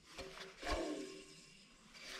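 Air compressor motor's belt pulley spun by hand: a faint knock, then a short whir with a ringing tone that fades within about half a second. The pulley wobbles as it turns, out of balance.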